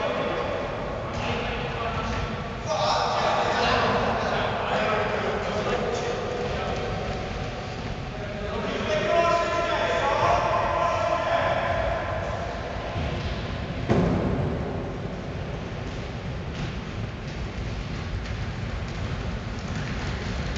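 Voices talking and calling out in an echoing sports hall, over the footfalls of a group of players jogging on the hall floor, with one sharp thud about 14 seconds in.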